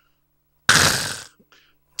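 A man's short, harsh, breathy 'khh' exclamation into a handheld microphone, starting sharply less than a second in and fading out within about half a second.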